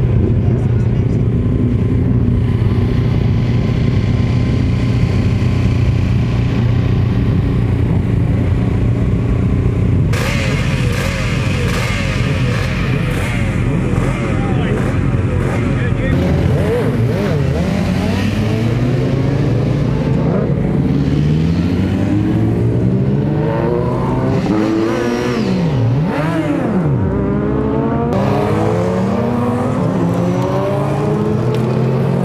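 Road-racing motorcycle engines running at idle with a steady hum. After a cut about ten seconds in, racing engines rev hard and accelerate away, their pitch climbing and dropping through gear changes. Near the end several sidecar outfits' engines overlap.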